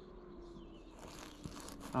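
Distant string trimmer (weed eater) engine running, a faint steady drone that slowly falls in pitch, with soft crinkling and clicks close by from a snack wrapper.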